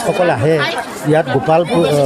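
Only speech: a man talking into a reporter's microphone in Assamese, with chatter from people around him.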